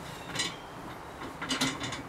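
A few short, rattling scrapes and clicks of handling noise: one about half a second in and a quick cluster near the end.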